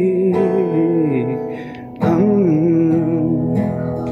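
A voice singing a slow melody over acoustic guitar, in two phrases, the second starting about halfway through.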